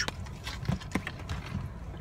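A few light clicks and soft knocks over a low steady rumble: handling noise from a phone camera being moved inside a car.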